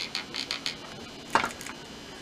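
Light plastic clicks and rattles from a dishwasher detergent dispenser module being handled and turned over in the hand, with one louder knock about one and a half seconds in.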